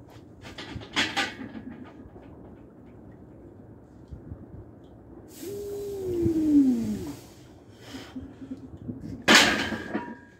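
A lifter's strained, breathy groan that falls in pitch as he presses a near-maximal 307 lb paused bench press up off his chest, then a loud metal clank near the end as the loaded barbell is racked. A lighter clink about a second in as the bar starts down.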